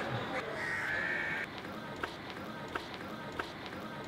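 Outdoor street ambience: a crow caws once, then light footsteps tick along, about two or three steps a second.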